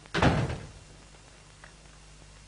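A wooden door is shut with one heavy thud about a quarter second in, dying away within half a second. A faint click follows near the end.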